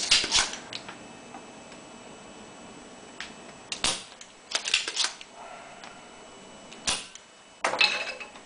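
Desoldering tools working on a circuit board: a few sharp clicks and clacks, scattered a second or more apart, with quieter stretches between.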